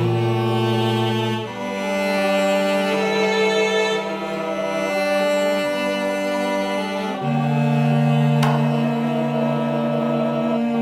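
Live music from instruments played on touchscreen apps: a slow groove of sustained, held chords over a low bass note, the chord changing three times, with a single sharp click about eight and a half seconds in.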